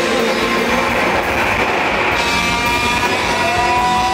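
Live rock band playing loud and steady, with electric guitars up front over drums.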